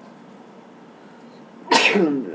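Quiet room tone, then a person sneezes once, suddenly and loudly, near the end.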